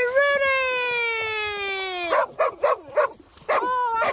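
A dog howling: one long held note that sags slowly in pitch and breaks off about two seconds in, then a few short yips and a second, brief howl near the end.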